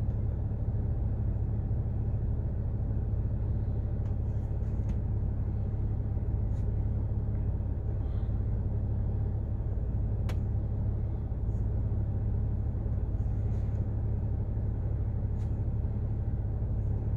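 Steady low rumble of a car idling, heard from inside the cabin. A few faint clicks sit over it, and one sharp click comes about ten seconds in.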